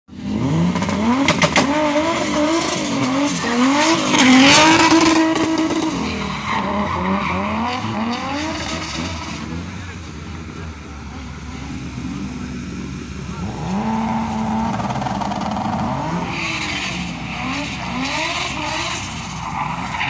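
Car engine revved hard over and over, its pitch sweeping up and down as the car drifts, loudest about four seconds in, with tyres skidding and squealing toward the end.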